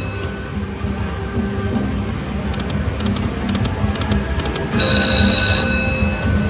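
Pure Cash Dynasty Cash video slot machine playing its electronic bonus-game music as the reels spin during free spins, with a few quick light clicks as the reels settle, then a bright ringing chime about five seconds in.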